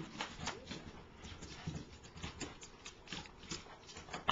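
Two Boston terriers' claws clicking and tapping on a hardwood floor as they move about, in quick, irregular taps.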